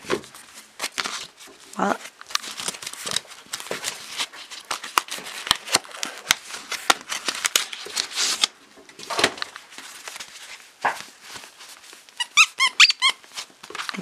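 Nylon dog toy being squeezed and handled: fabric rustling and crinkling under the hands. Near the end comes a quick run of squeaks with a wavering pitch from the toy's hidden squeaker.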